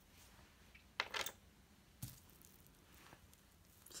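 Metal jewelry chains being handled in the fingers: a brief cluster of light clinks and rustles about a second in and a single sharp click at about two seconds, otherwise faint.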